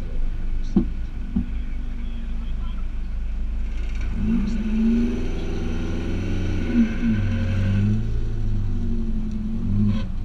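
Car engine idling with a steady low hum. About four seconds in, an engine climbs in revs, holds, drops back around seven seconds, then picks up again.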